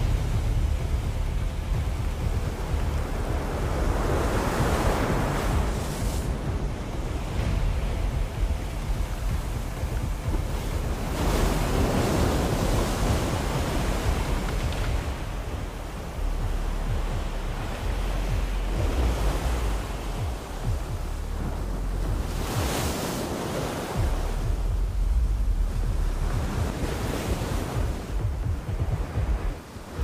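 Surf breaking and washing up a pebble beach in several swelling surges, under a constant low rumble of strong wind buffeting the microphone.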